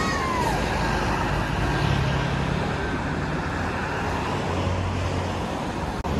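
Scania double-decker coach passing close by, its diesel engine running with a steady low hum over tyre and traffic noise. A brief whine rises and falls near the start.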